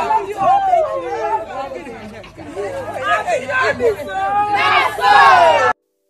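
A group of women talking and exclaiming excitedly over one another, their voices sweeping up and down in pitch. The voices stop suddenly shortly before the end.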